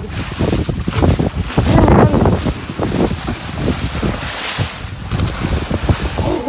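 A great white shark thrashing at the water's surface, splashing and churning the water in irregular bursts, with a heavier spray about four and a half seconds in. Wind rumbles on the microphone throughout.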